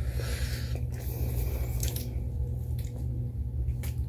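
Soft wet mouth sounds of someone licking and sucking a hard-candy lollipop, with a few small clicks, over a steady low hum.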